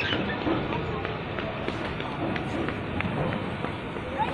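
Indistinct voices of people talking in the background over a steady outdoor noise, with a few faint clicks.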